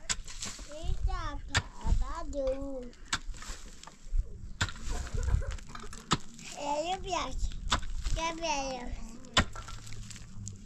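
Pickaxe blows into stony ground at a steady pace, about one every one and a half seconds, six in all. A child's voice talks between the strikes.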